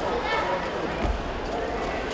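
Shouted voices echoing in a large sports hall, over dull thuds of two judoka's bare feet stepping and stamping on tatami mats, with a heavier thud about a second in.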